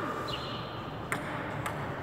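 Table tennis rally: the ball clicking sharply off paddles and the table, two clicks about half a second apart a little over a second in.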